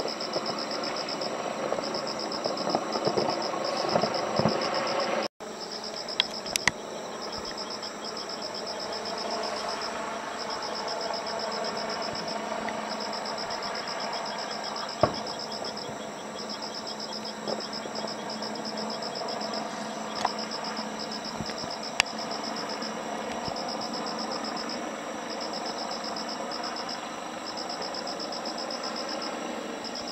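Insects chirping in a steady, pulsing night chorus. For the first five seconds the crackle of a distant fireworks burst runs under it, then stops abruptly. A few isolated distant bangs follow later on.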